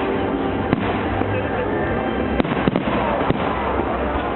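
Aerial fireworks shells bursting: about five sharp bangs, one a little under a second in and a quick cluster in the second half, over a steady din.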